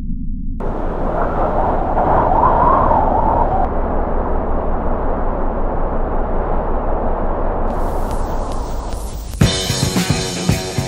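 Rushing wind and snowboard noise on an action camera, over a low, steady music bed. Near the end a rock track comes in hard with drums and guitar.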